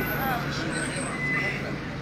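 A steady low hum of a running vehicle engine in street noise, with faint voices of people nearby and a brief thin high tone about halfway through.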